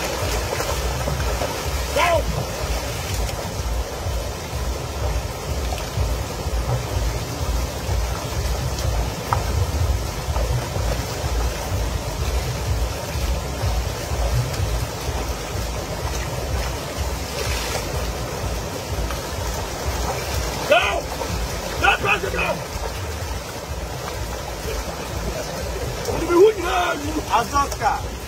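River water rushing steadily over a small waterfall, with a deep rumble underneath and bodies moving in the shallows. A few short shouted calls break in, one early and a couple near the end.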